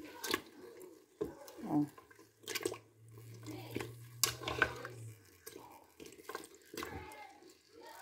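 A metal fork prodding and turning chunks of cooked cow's feet in broth inside an aluminium pressure cooker pot. Scattered light clicks and taps of the fork against the pot, with wet dripping and sloshing of the broth.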